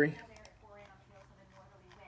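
A spoken word ends, then a quiet stretch with a couple of soft computer clicks about half a second in and faint voices in the background.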